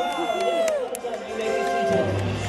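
Amplified voice over a theatre sound system with music playing under it and some audience noise.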